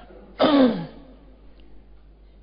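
A man clearing his throat once, about half a second in.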